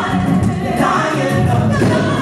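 Gospel vocal group of one male and three female voices singing together in harmony.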